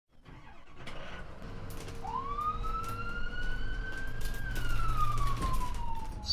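Emergency-vehicle siren sounding one slow wail: from about two seconds in it rises in pitch for about two seconds, then falls slowly, over a low steady rumble.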